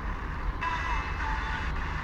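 Hiss from a Sony Ericsson phone's FM radio tuned between stations as it steps up from 96.0 to 96.2 MHz. About half a second in, the hiss shifts and a faint, weak broadcast shows through the noise.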